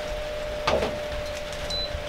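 Masterbuilt Gravity Series 560 smoker's draft fan running with a steady hum while the smoker heats toward its set temperature, with a single sharp click about two-thirds of a second in.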